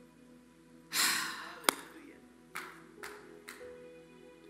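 Soft background music of held chords. Over it comes a loud breathy sigh close to the microphone about a second in, a sharp click, then three shorter breaths.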